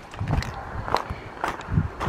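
Footsteps on loose gravel, about four uneven steps.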